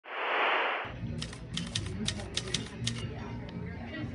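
Intro sound effects: a burst of TV static hiss lasting under a second, then about seven sharp, unevenly spaced clicks over a low hum.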